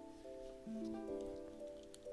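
Quiet background music of held notes that step from one chord to the next.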